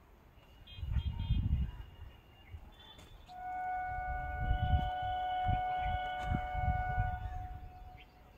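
A train horn sounds one steady note for about four seconds, starting a little after three seconds in. Irregular low rumbles come and go underneath it.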